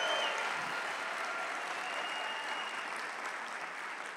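Large auditorium audience applauding, the clapping slowly dying away.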